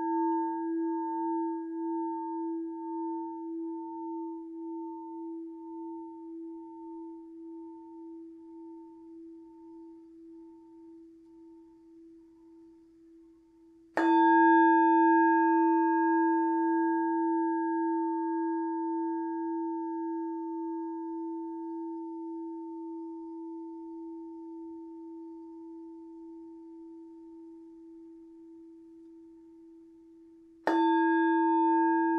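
Tibetan singing bowl ringing and slowly fading with a gentle wobbling pulse. It is struck once about halfway through and rings out again, a deep steady hum with a few fainter higher overtones, then slowly fades.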